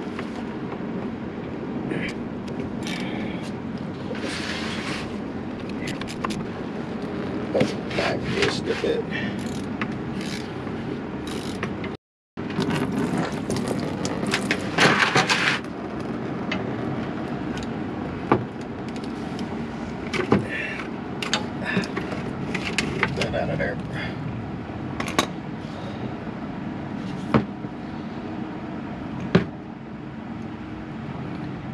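Ratchet and socket on an oil filter as it is worked loose under the vehicle: scattered metal clicks, knocks and scrapes over a steady background hum. A louder scraping stretch comes about halfway through, and the sound cuts out briefly just before it.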